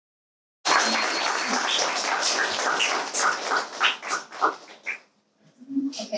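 Audience applauding, cutting in suddenly about half a second in, then thinning to a few scattered claps and dying away near the end.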